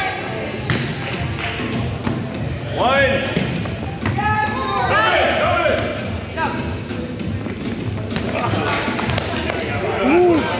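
Volleyball being hit during a rally on a hardwood gym floor, with sharp smacks of the ball. Players' shouts and calls ring out in the big hall, loudest about three seconds in and again around four to five seconds.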